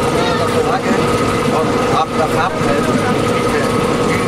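Steady rumble and noise of a passenger train coach, heard from inside, with a constant hum running through it. People's voices talk over it.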